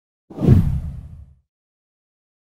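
A whoosh transition sound effect with a deep low rumble under it, starting just after the start and dying away over about a second.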